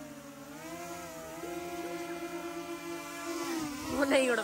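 Small quadcopter drone's propellers whining steadily while it lifts a plastic basket with a pizza box slung beneath it. The pitch dips briefly about half a second in, then holds steady.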